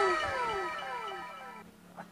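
A meow-like call falling in pitch, repeated as a fading echo that dies away about a second and a half in, typical of a sound effect added in editing.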